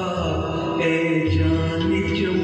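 A man singing a Hindi film song into a microphone over a recorded musical backing track, holding long, steady notes.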